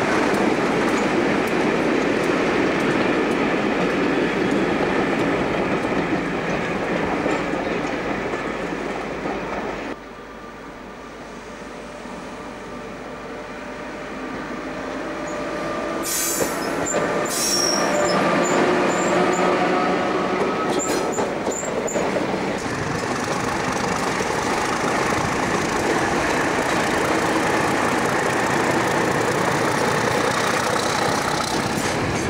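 Locomotives passing close by on the rails in spliced shots. A Class 47 diesel-electric runs past with steady engine and wheel noise. About a third of the way in this drops abruptly to a quieter stretch with a Class 87 electric locomotive and a few short high squeaks and clicks, and loud train noise returns for the last third.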